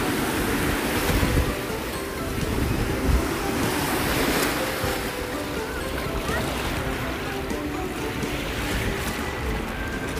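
Small waves breaking and washing through shallow water close by, with wind on the microphone.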